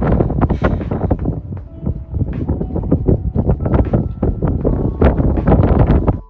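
Loud, gusty wind buffeting the microphone, rumbling and crackling unevenly throughout.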